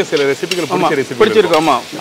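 A man talking, over a faint steady sizzle typical of oil frying.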